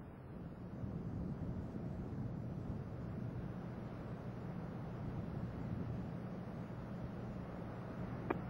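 Steady low rumble with hiss: the distant sound of the Space Shuttle's solid rocket boosters and main engines climbing away, heard from the ground. It grows a little louder about a second in, then holds level.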